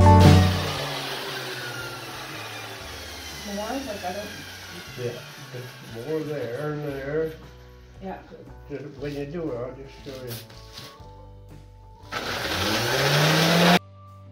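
Electric sander's motor starting up about twelve seconds in, its whine rising in pitch as it comes up to speed, then cut off abruptly just before the end. Before it, low voices talk quietly.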